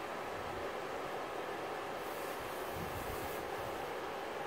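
Electric fan running steadily: an even, constant rush of air noise.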